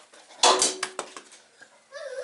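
A small shiny ball let go and landing, with a loud first knock about half a second in and a few quicker, fainter knocks as it bounces and rolls to a stop.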